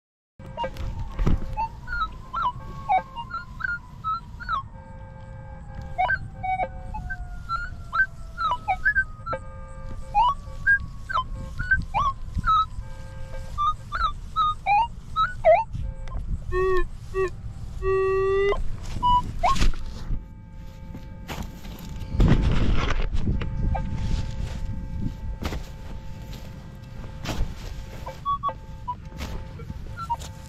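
Metal detector target tones: many short beeps of differing pitch as the coil sweeps over buried metal, with a rough thump about 22 seconds in.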